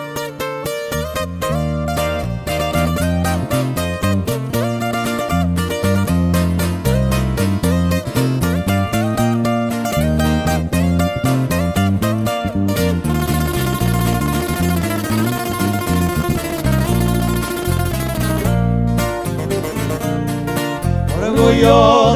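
Sierreño band playing an instrumental intro: a 12-string guitar and a six-string lead guitar picking over an electric bass line, with a brighter strummed passage midway. The lead vocal comes in at the very end.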